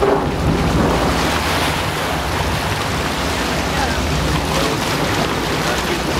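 Water rushing and splashing along the hull of a moving sportfishing boat, over a steady low engine hum, with wind buffeting the microphone.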